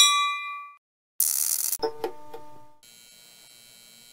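Notification-bell sound effect from a subscribe-button animation: a bright ding that rings out and fades over about a second. It is followed by a short hissing whoosh, a brief tinkling of tones, and then a faint steady tone.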